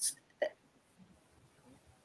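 A pause between speakers on a video call: the last word of a sentence trails off at the start, a single brief, soft vocal sound comes about half a second in, and then there is dead silence.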